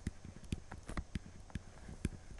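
A stylus clicking and tapping on a pen tablet while handwriting, with sharp, irregular taps several times a second over a faint low hum.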